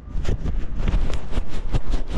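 Phone being rubbed against a hooded sweatshirt to wipe spray-paint overspray off its lens: the fabric scrubbing over the microphone in quick strokes, about seven a second, over a low rumble of wind on the mic.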